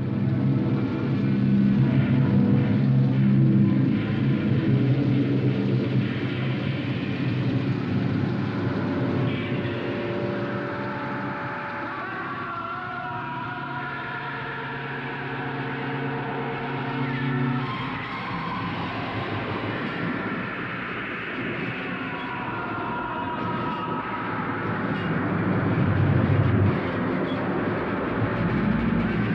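A film clip's soundtrack: sustained low drone tones over a rushing, rumbling noise, ending about two-thirds of the way through. After that, noisier rumbling special-effects sound swells near the end.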